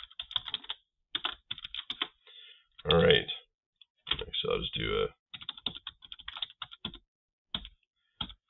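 Typing on a computer keyboard: quick runs of keystrokes, one in the first two seconds and another in the second half.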